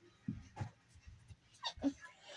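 A dog whimpering faintly: a few short, soft sounds, then short rising whines near the end.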